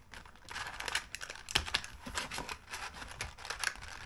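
Packaging of soft-plastic fishing lures being handled and opened, crinkling and crackling irregularly as the lures are taken out.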